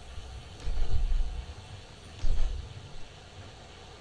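Wind buffeting the camera's microphone while riding a road bike: a low rumble that swells in two gusts, about a second in and again just past two seconds.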